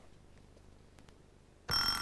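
Near silence, then a little before the end a quiz-show contestant buzzer goes off: a steady electronic tone that starts suddenly, the signal that a player has buzzed in to answer.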